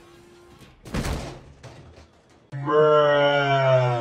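A dull thud about a second in. From about two and a half seconds, a loud held note with a buzzy, many-toned sound slides slightly down in pitch.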